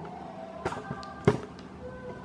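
Two knocks from the camera being handled as it is moved, about two-thirds of a second and just over a second in, the second the louder. Under them are the steady noise of the Arno Silence Force 40 cm fan running and faint music with held notes.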